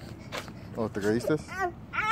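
A small child whimpering in a few short, high-pitched cries.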